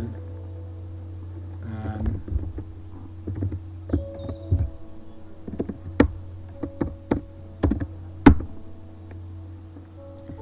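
Computer keyboard keystrokes as a terminal command is typed: irregular single clicks, sharper and louder in the second half, the loudest late on. A steady low hum runs underneath.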